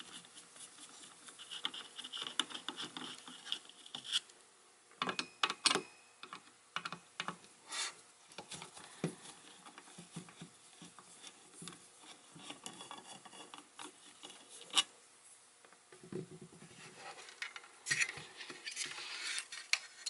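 Screwdriver turning small screws out of a power supply's circuit board, with scattered clicks and scrapes of metal and board being handled. A high scraping sound lasts a couple of seconds from about two seconds in, and the handling grows busier near the end as the board is lifted out of its metal case.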